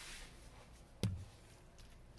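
A wooden spoon poking around in a slow cooker full of roast and vegetables: faint stirring with one sharp knock about a second in.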